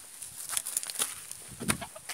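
Handling noise from a phone being moved about close to the body: a few sharp clicks and soft knocks, with a bump near the end.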